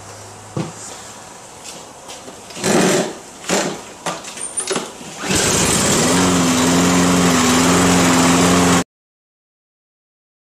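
Toro walk-behind lawn mower's small engine being pull-started: a few short noisy pulls, then it catches about five seconds in and runs steadily, freshly fuelled with stabilizer-treated gas to draw it through the lines. The sound cuts off abruptly near the end.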